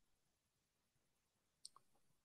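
Near silence: room tone, with one faint click a little over a second and a half in.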